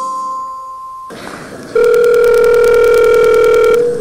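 Telephone ringback tone heard by the caller as an outgoing call rings at the other end: one steady ring lasting about two seconds, played over the room's speakers. Before it, a held tone fades out about a second in.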